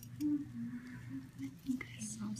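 A person humming softly and low, holding short level notes that step up and down like a tune, with a few faint clicks and one sharper click near the end.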